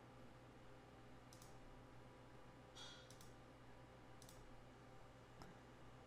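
Faint computer mouse clicks, a few scattered over several seconds, against near-silent room tone.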